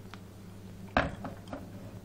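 A sharp knock of a hard object against the kitchen countertop about a second in, followed by two lighter clicks, over a steady low electrical hum.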